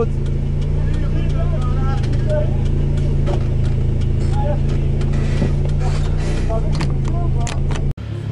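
A vehicle engine idling steadily, a low even hum, with faint voices over it; it cuts off abruptly just before the end.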